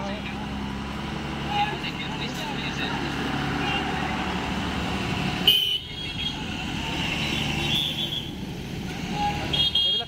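People talking in the background over steady vehicle engine noise from the road. A couple of short horn toots sound about halfway through and near the end.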